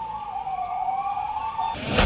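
A siren wailing, its pitch wavering up and down, with a rising whoosh swelling in near the end.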